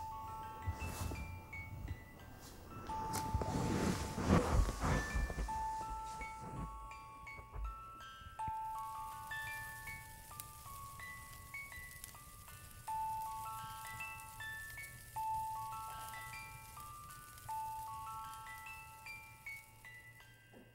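A music box playing a slow, tinkling melody of high ringing notes. Rustling and handling noise covers the first few seconds, loudest a few seconds in.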